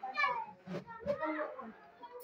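Children's voices: several children talking and calling out while playing, with a few short sharp sounds among them.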